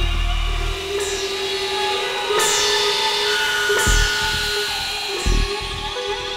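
Experimental electronic synthesizer music: several held drone tones over a noisy, grinding texture, cut into every second or two by sudden hits whose high hiss falls away, with short deep bass pulses.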